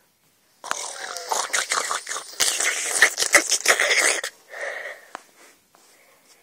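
Mock eating noises made by mouth: breathy, crackly chomping and munching for about three and a half seconds, starting about a second in, then a softer bit of munching.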